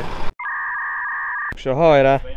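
A steady electronic bleep about a second long, two pitches sounding together, which starts and stops abruptly between spoken words.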